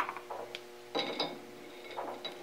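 Light metallic clicks and a brief tinkle of steel pin gauges being picked from their drawer and handled, the loudest cluster about a second in.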